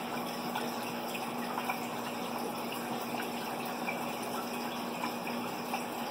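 Aquarium water running steadily through a hang-on breeder box, an even rush with a steady low hum underneath.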